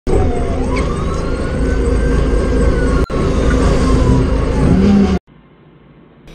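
A vehicle engine running loudly, with one slow tone over it that rises and then falls. The sound breaks briefly about three seconds in and cuts off abruptly at about five seconds.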